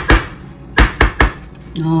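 Sharp knocks of an opened tin can of beef loaf being tapped upside down to loosen the meat from the can: one just after the start, then three quick knocks about a second in.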